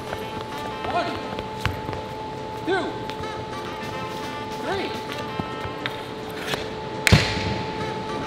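A hockey stick swung in a slap shot strikes a ball on a hard floor about seven seconds in, one sharp crack with a low thud. Before it, background music plays with short bits of voices.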